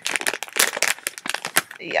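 Blind-bag packaging crinkling and crackling in the hands as it is opened, a quick run of sharp crackles.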